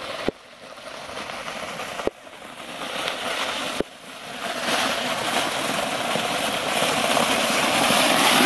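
A plastic sled scraping and sliding over an icy, packed-snow surface, a rough steady rushing noise that grows louder as the sled comes closer. Three brief sharp clicks break it in the first four seconds.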